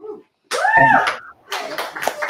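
A short, high-pitched vocal whoop that rises and falls, followed by a few sharp hand claps near the end.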